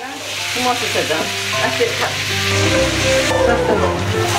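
Food sizzling in a frying pan on a hob, stirred with a wooden spoon; a steady frying hiss.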